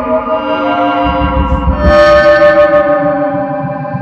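Live band playing electronic music: held, echoing tones that step from note to note over a low pulsing bass, swelling louder about two seconds in.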